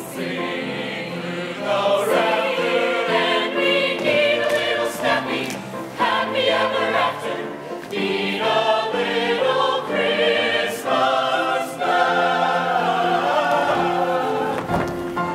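Mixed-voice show choir singing together in harmony.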